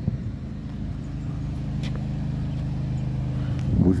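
An engine running steadily at constant speed, a low even hum with a couple of faint clicks.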